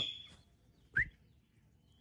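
A sparrow chick gives a single short rising peep with a soft bump about a second in; otherwise only faint background.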